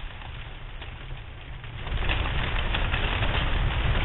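Fire burning through undergrowth beneath a row of plane trees, crackling over a deep rumble, getting louder about two seconds in.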